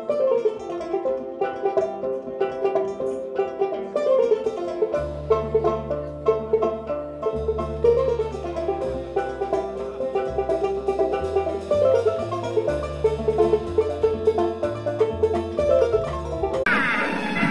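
Kora plucked in quick, repeating melodic patterns, with upright bass notes joining about five seconds in.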